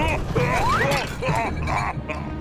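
Cartoon soundtrack: short wordless vocal sounds from the cat character and a rising whistle-like glide, over background music.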